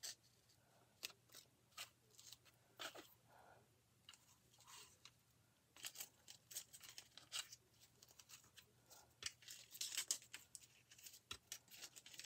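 Faint crinkling and rustling of a plastic stencil transfer sheet being slid, lifted and pressed onto a wooden sign, with scattered light clicks and taps. The handling grows busier about halfway through and again near the end.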